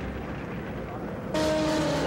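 Dramatic suspense music: a quieter, noisy lull with a low rumble, then a held chord comes in abruptly about a second and a third in.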